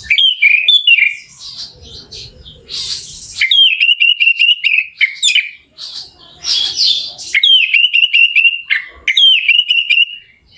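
Orange-headed thrush (anis merah) singing: loud varied phrases with quick runs of short repeated notes, one run in the middle and two more in the second half.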